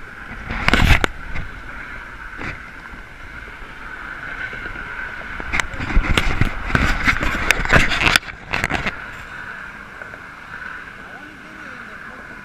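Handling noise from a hand-held action camera being moved: irregular knocks and rubbing, heaviest in a cluster between about six and nine seconds, over a steady high hum.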